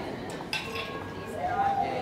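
A clink of tableware, a dish or glass knocked, about half a second in, over the murmur of a busy dining room; a voice is heard briefly near the end.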